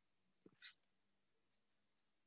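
Near silence: room tone, with one faint short hiss about half a second in.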